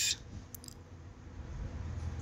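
Two faint computer mouse clicks about half a second in, over low steady room hum.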